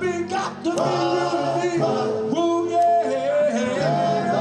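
Live Motown-style male vocal group singing in close harmony, several voices holding and sliding notes together, with instrumental backing underneath.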